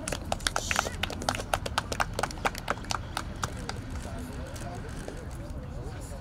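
A small group clapping: separate, uneven hand claps for about three seconds, then thinning out. Faint voices are heard in the background.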